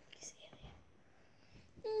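A faint whisper in the first half second, then near quiet until a voice starts speaking just before the end.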